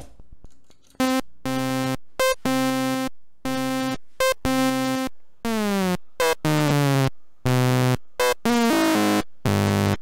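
An SSI2131-based Eurorack VCO with its sawtooth output soft-synced to a second oscillator plays a run of short, bright, buzzy sequenced notes with gaps between them. The run starts about a second in, and on some notes the overtones sweep.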